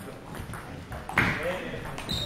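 Table tennis ball clicking off bats and table in a doubles rally. About a second in comes the loudest sound, a short sudden voice burst.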